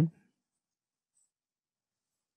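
The tail of a spoken word right at the start, then near silence.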